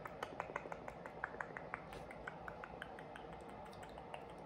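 Long press-on fingernails clicking and tapping against each other in a quick, irregular run of light clicks.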